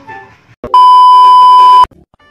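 Loud, steady electronic beep at a single high pitch, lasting about a second and starting a little after the first half-second: a bleep tone added in editing. Faint background music notes come just before it.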